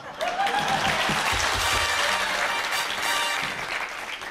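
Studio audience applauding, a dense clatter of many hands clapping, with music playing underneath.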